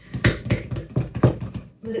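Sourdough dough being slapped and folded by hand in a glass bowl (Rubaud method): a run of repeated soft, wet thuds, several a second.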